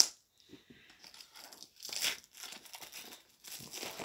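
Plastic shrink wrap being torn and peeled off a DVD case, in irregular crinkling bursts, with a sharp click at the start and a louder rip about two seconds in.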